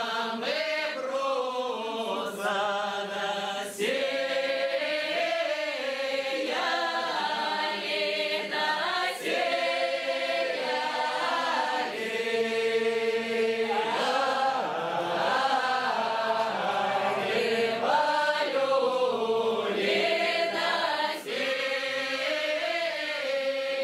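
A mixed group of men and women singing an upper-Don Cossack round-dance (khorovod) song unaccompanied in chorus, with long held notes, opening on the refrain 'Ой да'.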